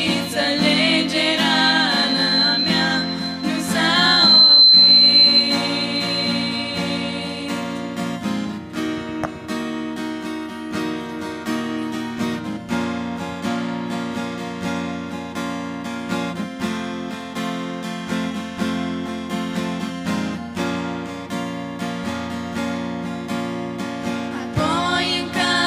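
A women's vocal trio singing a Christian song to acoustic guitar, live. The voices hold a long note and fall silent about eight seconds in, leaving an instrumental passage led by the guitar.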